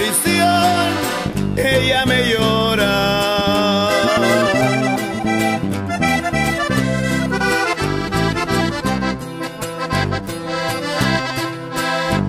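Instrumental passage of norteño music: a button accordion playing the lead melody over a steady bass and rhythm accompaniment, with no singing.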